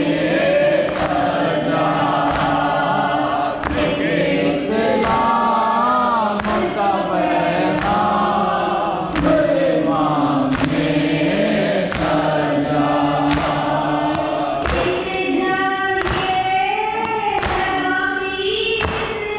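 Shia mourners chanting a noha together while beating their chests in matam, the sharp slaps of hands on chests falling in a steady rhythm about once every three-quarters of a second.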